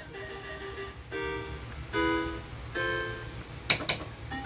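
Electronic tones from an Island 2 slot machine as its reels spin and stop: three short synthesized notes about a second apart over a low steady hum, then two sharp clicks near the end.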